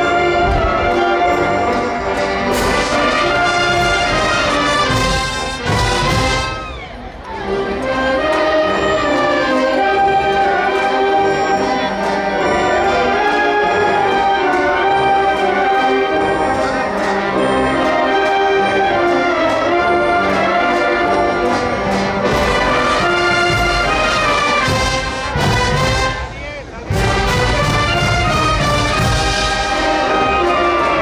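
A massed Oaxacan brass band of clarinets, trumpets, trombones and sousaphones playing loudly and steadily, with a short break in the music about seven seconds in and another a few seconds before the end.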